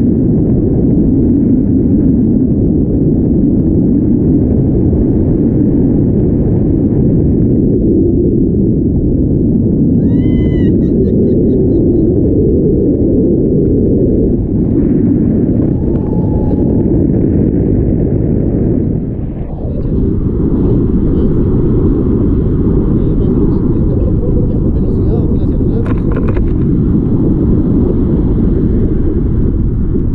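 Wind buffeting the microphone of an action camera on a tandem paraglider in flight: a loud, steady low rumble. A short voice call cuts through about ten seconds in.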